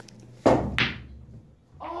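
A pool shot on a felt-covered table: one dull thump about half a second in, dying away within a second.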